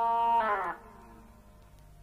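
A band's sustained note, rich in overtones, slides down in pitch and dies away under a second in. It is followed by a quiet pause with only a faint low hum.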